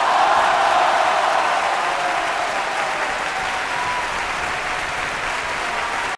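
Applause, swelling in over the first half second and then holding steady.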